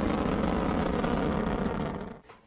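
Soyuz rocket's engines during ascent, heard as a steady, broad rushing rumble that fades away near the end.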